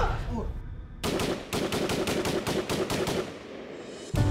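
Rapid automatic gunfire in a film soundtrack: a long string of sharp shots in quick succession, starting about a second in and dying away near the end.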